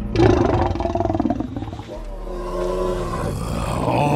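An African elephant trumpeting: a loud call that starts suddenly, then a second, steadier and longer call about two seconds in.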